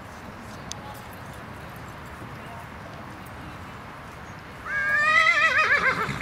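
A horse neighing once near the end: a loud whinny lasting about a second and a half, rising at the start and then quavering, over a steady outdoor hiss.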